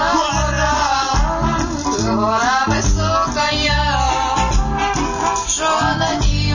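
Dance music from a DJ set played loud over an open-air festival sound system: a heavy bass beat in regular pulses under a wavering melody line.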